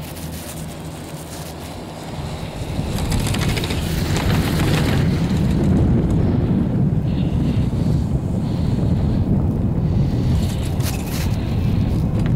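Wind noise buffeting the camera microphone as it moves down a ski slope: a heavy low rumble that swells about three seconds in and stays loud.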